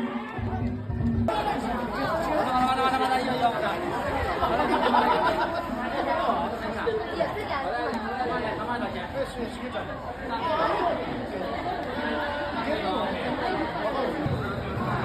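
A street crowd of many voices talking and calling out at once in a dense babble. It grows louder abruptly about a second in.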